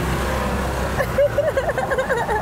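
Steady low rumble of street traffic. About a second in, a woman laughs in quick high-pitched bursts that are louder than the hum.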